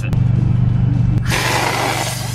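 Helium gas hissing from a disposable helium tank's valve into a weather balloon, starting a little over a second in and then holding steady. Background music runs underneath.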